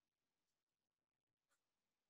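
Near silence: the audio is gated to almost nothing between remarks in an online talk.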